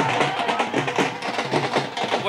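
Dhol drums beating a fast, steady rhythm at a street celebration, with voices over the drumming.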